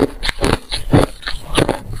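A mouthful of packed freezer frost being chewed close to the microphone, crunching about three times a second.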